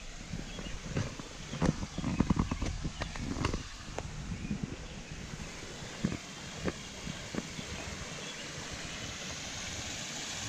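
Footsteps on a wooden footbridge: a run of hollow knocks over the first four seconds, quickest around two seconds in. A steady background hiss follows.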